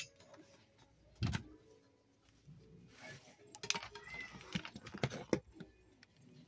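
Scattered clicks and knocks of handling as things are bumped and shifted, the loudest about a second in and a cluster near the end, with a brief faint high squeak about four seconds in.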